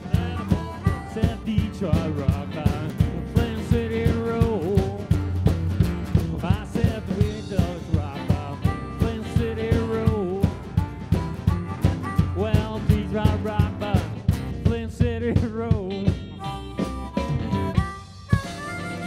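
Live blues band playing an instrumental break with a steady beat of about two hits a second: harmonica playing a lead line with bent notes over electric guitar, upright bass and drums.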